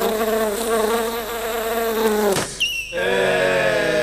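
A steady buzzing drone with a slight waver, like a fly or mosquito. About two and a half seconds in it breaks off with a quick upward sweep, and a second buzzing tone follows that slowly sags downward.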